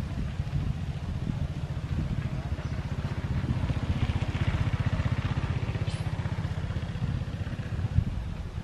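A small engine running steadily close by: a low rumble with a rapid, even pulse.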